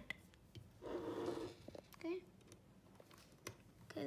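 Faint scattered clicks and scrapes of a precision screwdriver working a screw in a hard disk drive's metal casing. A short, soft murmur of a voice comes about a second in.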